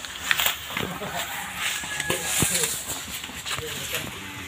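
Quiet stretch of faint, indistinct voices, with a few small clicks and knocks over a low background.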